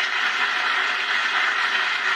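Studio audience applauding steadily, heard through a television's speaker.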